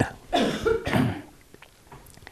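A man coughing briefly in the first second.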